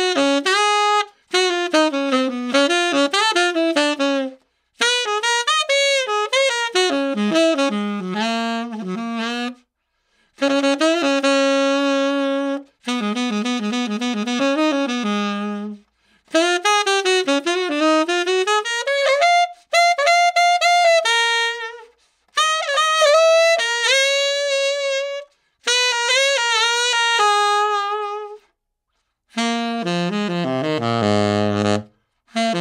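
Tenor saxophone on a Phil-Tone Tribute Ltd 7* metal mouthpiece with a Rigotti Gold Jazz 4 medium reed, played solo. It plays about nine jazz phrases separated by short breath pauses, several ending on held notes, with a big, fat, darkish sound.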